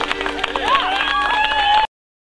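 A person's voice over the chatter of a crowd, with scattered sharp clicks; the sound cuts off suddenly near the end.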